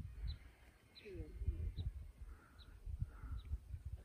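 A small bird calling faintly: short high chirps repeated roughly every three-quarters of a second, over a low rumble.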